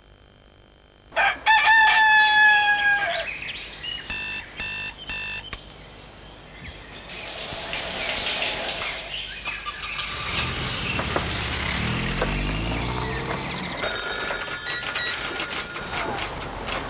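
A rooster crowing once, loud and lasting about two seconds, played as a sound effect in a TV commercial soundtrack. It is followed by three short, evenly spaced tone pulses, then a steady whooshing noise with low sliding tones under it.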